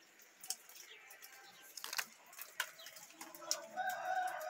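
A bird calling: one long, held, steady call that begins about three seconds in, over scattered light clicks and taps.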